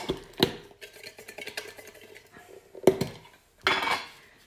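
Clinks and rustling of a hand drawing a lot from a container: sharp clicks near the start and about three seconds in, then a short rustle just before the end.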